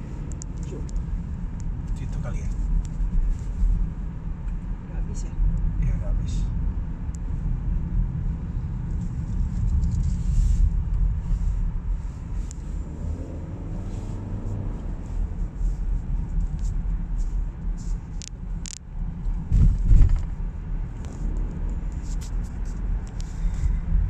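Car cabin noise while driving slowly: a steady low rumble of the engine and the tyres on the road, with a single low thump late on.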